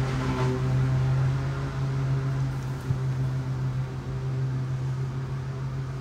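Lawn mower engine running outside at a steady speed, a constant low drone with no change in pitch; a single small click about halfway through.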